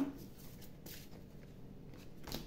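Faint rustling and light clicks of a deck of oracle cards being handled and shuffled by hand.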